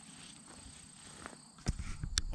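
Insects in the grass making a steady high-pitched drone. Near the end comes a loud knock and low thuds as the camera is handled.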